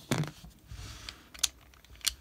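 A few light metal clicks and soft handling noise from a North American Arms Mini Master .22 Magnum mini revolver being taken down by hand: its cylinder pin has been pulled and the cylinder is being worked loose from the frame.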